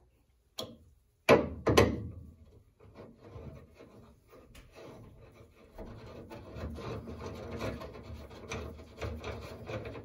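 A few sharp metal clanks in the first two seconds, then a steady scraping rasp that grows louder about six seconds in: a new inner tie rod being screwed by hand into the steering rack, metal threads rubbing.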